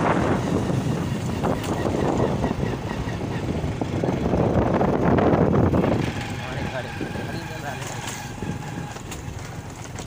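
Wind rushing over a phone microphone on a moving motorcycle, with the bike's engine running underneath. The rush eases about six seconds in.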